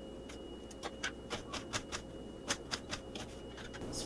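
Kitchen knife chopping a red onion on a cutting board: a run of about a dozen irregular sharp taps, the strongest a little past halfway.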